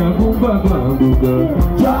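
Live band playing: electric guitar and drums with a steady beat, and a man's voice singing into the microphone.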